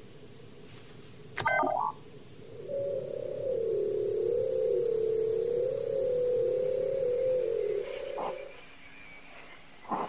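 Sci-fi electronic scanner sound effects: a short, loud beep, then a wavering electronic tone with a thin high whine for about six seconds as a red scanning beam sweeps a face, stopping near the end with a click, and a brief blip at the very end.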